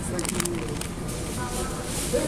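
Faint, indistinct voices, with a brief crinkle of plastic snack packaging being handled near the start.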